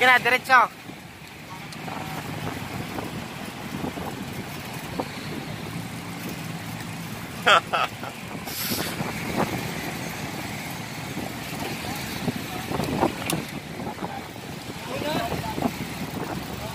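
Steady hum of road traffic and wind noise heard from a moving bicycle, with a person's short call about seven and a half seconds in and voices again near the end.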